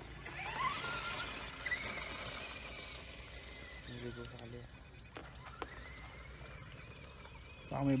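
High-pitched whine of an RC truck's HPI 4000kv brushless motor and drivetrain, rising as it accelerates away, dropping around three seconds in, then climbing again and holding high for the last few seconds as the truck runs across the grass. A short low call sounds about four seconds in, and a man's voice comes in at the very end.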